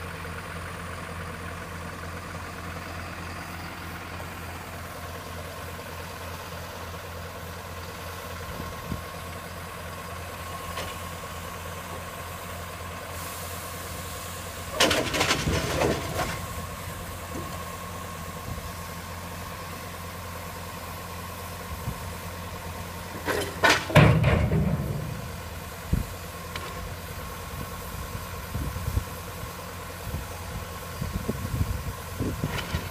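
Mercedes-Benz Unimog road-rail truck's diesel engine running steadily at idle while its crane works. Twice, about halfway through and again a little before the end, there are short loud bursts of clattering knocks.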